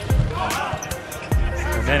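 A volleyball being struck during a rally: sharp hits of the ball, one near the start and another at about a second and a half, over background music and arena noise.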